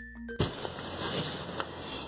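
Light background music on mallet percussion cuts off abruptly about half a second in, giving way to the rustle and handling of cotton fabric being pulled away from a sewing machine, with a faint knock or two.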